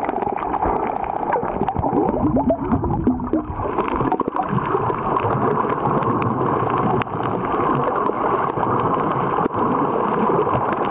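Underwater sound on a coral reef picked up by a submerged camera: a steady, muffled water noise with scattered sharp clicks throughout. From about a second and a half to three and a half seconds in, there is a short run of gurgling, bubbly blips.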